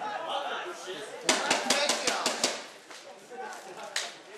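A quick run of about eight sharp knocks close to the microphone, in just over a second, amid people's voices, followed by a single click near the end.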